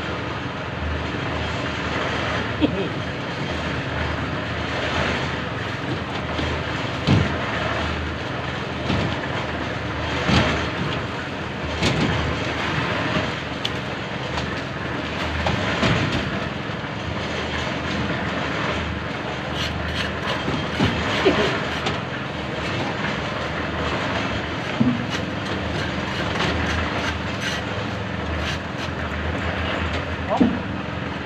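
Steady machine noise with scattered knocks and clatter, and voices in the background.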